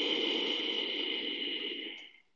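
Ujjayi breath: one long audible breath of about two seconds drawn through a slightly constricted throat, a steady airy rush that fades out at the end.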